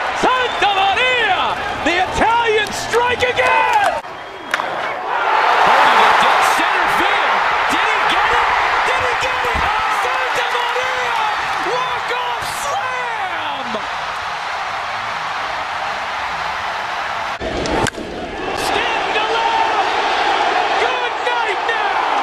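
A ballpark crowd cheering loudly after a game-winning hit, with excited shouting from a broadcaster and fans over it. The sound cuts off abruptly once, about three-quarters of the way in, and another crowd cheer begins.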